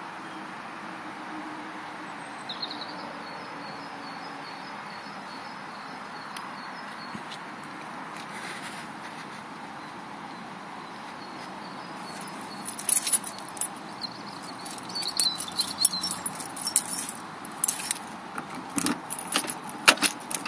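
Steady outdoor background hiss, then from about twelve seconds in a bunch of car keys jangling and clicking in the hand, ending with the key going into the car's door lock.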